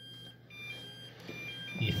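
Makita lithium-ion battery charger sounding a short electronic tune of beeps at two or three alternating pitches as a battery is seated on it, the signal that charging has begun.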